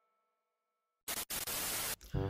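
Dead silence, then about a second in a burst of even static hiss, broken by a brief gap and cutting off suddenly: a TV-static transition effect between the intro and the vlog footage.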